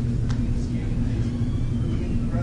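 A faint, distant man's voice asking a question from the audience away from the microphone, over a steady low hum in the hall.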